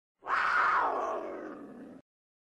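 Logo sting sound effect: a single noisy burst that starts about a quarter second in, slides down in pitch as it fades, and cuts off suddenly.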